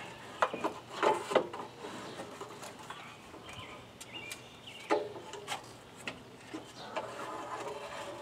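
Car alternator being worked out of a cramped engine bay by hand, knocking and scraping against the brackets and engine parts around it. Several knocks come in the first second and a half, with more around the middle.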